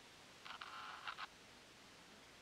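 A faint, brief electronic glitch buzz, like a TV signal breaking up, lasting under a second from about half a second in, as the cartoon TV's picture glitches into colour bars.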